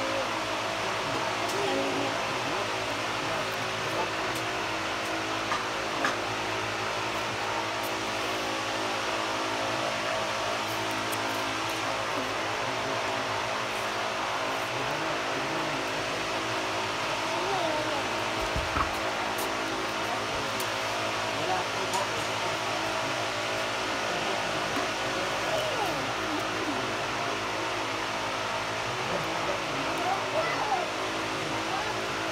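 A steady mechanical hum with several fixed tones that does not change, under faint, intermittent voices and small clicks.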